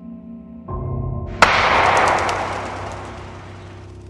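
A single gunshot sound effect about one and a half seconds in, sudden and sharp, with a long fading tail, over background music that swells just before it.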